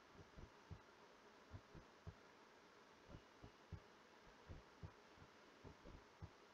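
Near silence: faint room hum with soft, irregular low thuds, two or three a second.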